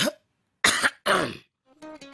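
A person coughing twice, harshly, the two coughs close together, after a short vocal sound. Music with plucked strings starts near the end.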